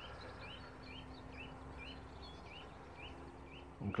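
A bird repeating a short, high chirping call about twice a second, over faint outdoor background noise.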